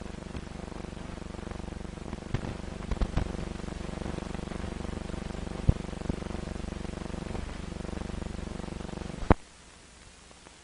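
Steady low hum with scattered clicks and pops from an old film soundtrack. It cuts off with a sharp click about nine seconds in, leaving only faint hiss.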